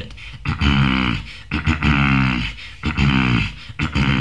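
Beatbox throat bass: a growling low tone made by drawing out a throat-clearing sound, held three times for about a second each.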